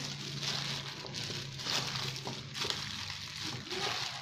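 Shredded chicken and herbs being tossed by a hand in a plastic glove in a stainless steel bowl: rustling and crinkling of the glove and leaves in repeated strokes, over a low steady hum.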